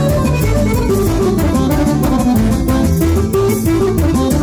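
Loud live instrumental band music: busy melodic lines over a steady, fast beat, with no singing.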